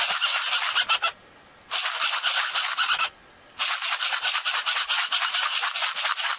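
A pet parrot making harsh, scratchy rasping sounds in three bursts of one to three seconds each, with short quiet gaps between.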